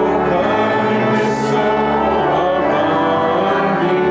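Church congregation singing a hymn together, with many voices holding long notes.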